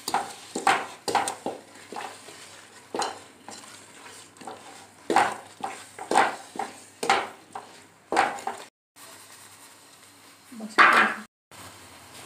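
Wooden spatula stirring and scraping thick milk-cake mixture (reduced, curdled milk with sugar just added) around a steel pot on the stove, in irregular strokes about once a second. The sound cuts out briefly twice near the end.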